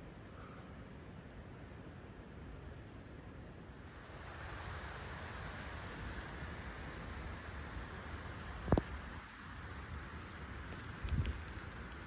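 Low, steady rustling noise that grows a little louder about four seconds in, with one sharp click about two-thirds of the way through and a few soft thumps near the end.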